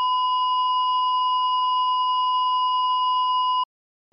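Heart-monitor flatline sound effect: one continuous high electronic beep, held at an even pitch and level, cutting off suddenly near the end.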